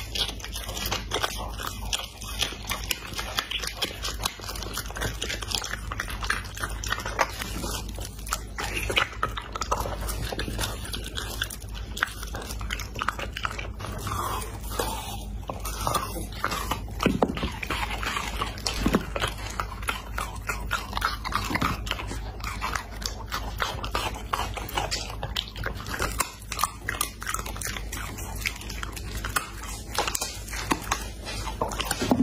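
A dog biting and chewing pieces of raw meat fed by hand, a rapid, continuous run of short clicks and smacks from its jaws.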